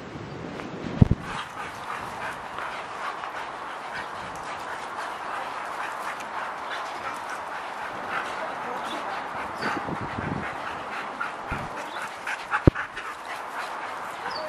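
A Siberian husky and a Jack Russell terrier making many short calls in quick succession as they play together. A sharp thump comes about a second in and another near the end.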